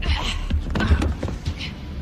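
Movie fight sound effects: a quick run of sharp punch and kick hits and thuds, about six in two seconds.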